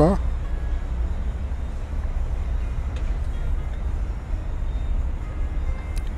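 Steady low rumble under a faint, even hiss, with no distinct events.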